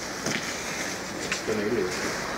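A pigeon cooing once briefly near the end, a short wavering low call, over steady outdoor background noise with a few sharp handling clicks.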